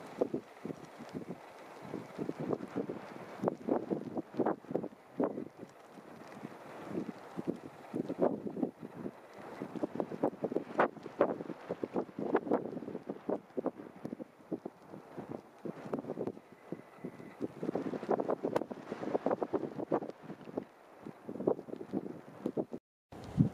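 Strong wind buffeting the camera microphone in irregular gusts, with dull rumbling thumps coming and going throughout.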